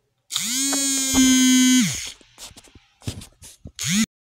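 Smartphone vibrating for an incoming call: a steady motor buzz that spins up, gets louder about a second in and stops after about a second and a half. A second buzz starts just before the end.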